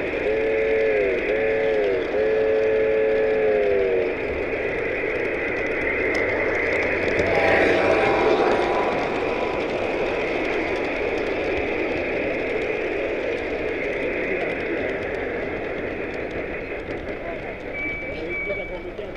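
Model train steam-whistle sound, a chord of several notes, blowing three blasts (two shorter ones, then a long one), each sagging in pitch as it cuts off; a second, fainter whistle chord sounds near the middle. Steady crowd chatter and hall noise run underneath.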